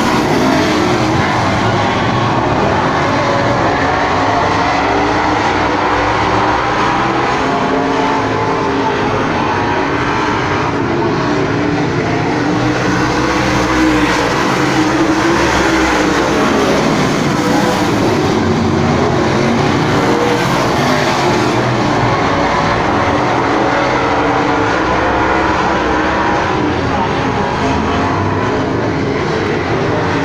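A field of dirt-track modified race cars racing, their engines at full throttle blending into a loud, steady drone, with the pitch rising and falling as cars pass.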